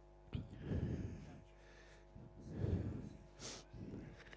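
Two muffled, breath-like puffs of air on a close microphone, about two seconds apart, the first starting sharply, over a faint steady hum.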